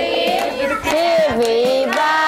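A song with a high, child-like singing voice carrying the melody in long held notes that slide from pitch to pitch.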